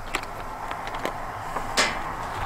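Plastic salt pouch crinkling as it is handled and opened: a few scattered light crackles, then one louder rustle near the end.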